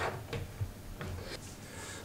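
A few faint metal clicks as a steel washer and nut are fitted onto a bolt by hand, with one sharper click at the start.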